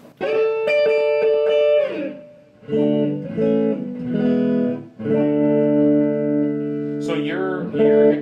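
Chapman ML-3 Traditional electric guitar played through an amplifier. One chord is struck and rings for about two seconds, a few shorter chords follow, and then a chord is held for about two seconds. A voice starts near the end.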